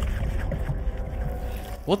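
Low, rumbling, churning noise from a horror film's soundtrack, like water stirring in a pool, with a man's startled "what" near the end.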